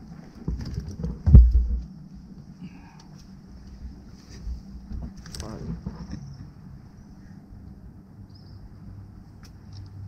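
Handling knocks on a small fibreglass boat's deck as a caught fish is taken from the landing net. The loudest is one heavy, low thump about a second and a half in, followed by a few lighter bumps, over a faint steady high hiss.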